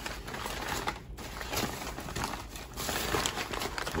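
Brown kraft packing paper crumpling and crackling as hands unwrap a paper-wrapped item, irregular and continuous, with a brief lull about a second in.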